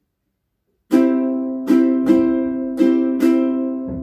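Ukulele strumming a C major chord in the pop rhythm: five strums, down, down, up, up, down, starting about a second in. The last chord is left ringing and fading.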